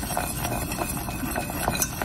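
A whisk stirring a hot, just-boiled cocoa, butter and evaporated-milk mixture in a stainless steel saucepan. It ticks lightly and quickly against the pan, about five times a second.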